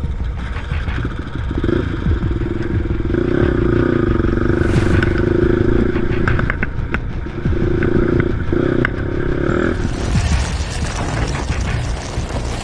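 Sport quad (ATV) engine held at steady high revs on a trail ride, easing off briefly in the middle and then falling away near the end, over a constant low rumble of wind and ground noise on the onboard microphone.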